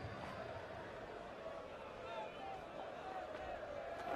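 Steady background murmur of a cricket crowd in the stands, with faint distant voices and no single loud event.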